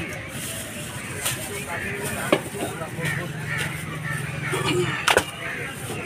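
Busy roadside market ambience: background voices murmuring, and a vehicle engine running for a couple of seconds in the middle. A few sharp knocks sound out, the loudest near the end.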